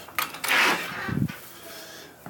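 Screen door of a screened porch being unlatched and pulled open: a click, then a loud rasping creak, and a low knock just after a second in.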